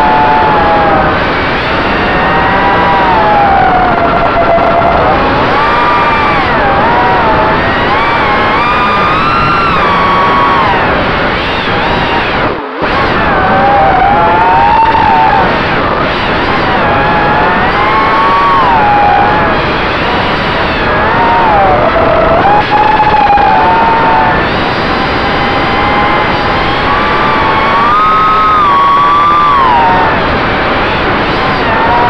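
FPV racing quadcopter's brushless motors and propellers whining in flight, the pitch rising and falling constantly with throttle over a rush of prop wash and wind on the onboard camera's microphone. The sound cuts out for an instant about halfway through.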